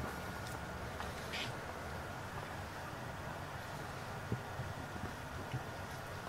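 Faint steady background hum with a thin, high steady whine, broken by a brief hiss about a second in and a few small clicks near the end.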